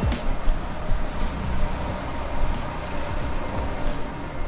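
Steady hiss of rain with a constant low rumble of road traffic.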